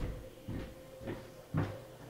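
About four dull knocks or thumps in two seconds, the loudest one and a half seconds in: handling noise from a hand-held smartphone being moved close to the microphone.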